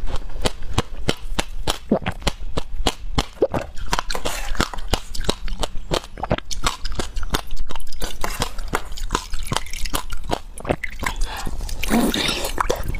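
Ice being bitten and chewed close to the microphone: a rapid, uneven run of sharp cracks and crunches, several a second.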